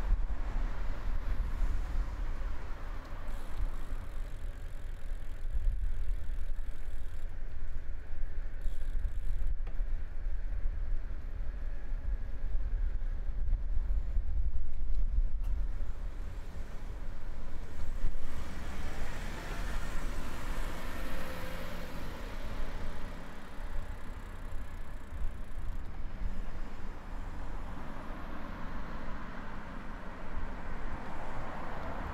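Suburban road traffic heard while riding a bicycle along the road edge: a steady low rumble of wind and road noise, with cars going by. A passing vehicle swells loudest from about 18 to 23 seconds in.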